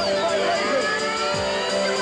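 Happy hardcore rave music playing loud over a club sound system, with synth sweeps falling in pitch about the start and a deep kick drum thud about a second and a half in.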